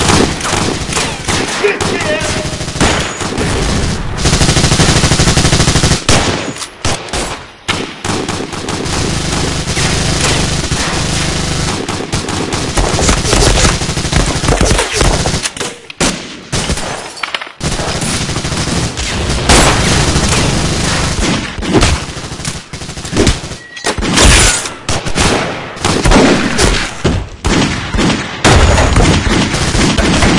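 Rapid, near-continuous gunfire from pistols and automatic rifles, long bursts with two short lulls, about six seconds in and again about sixteen seconds in.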